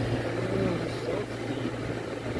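Car engine idling, heard inside the cabin as a steady low hum, with faint voices over it.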